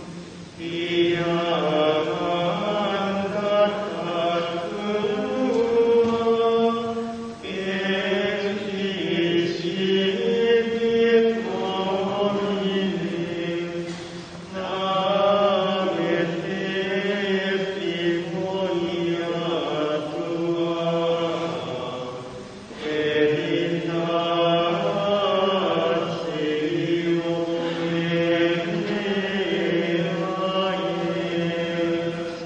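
Benedictine monks singing Gregorian chant, a single melodic line in long sustained phrases, pausing briefly for breath about every seven to eight seconds.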